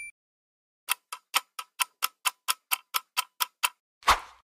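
Ticking-clock sound effect of a quiz countdown timer: about four sharp ticks a second for nearly three seconds, starting about a second in.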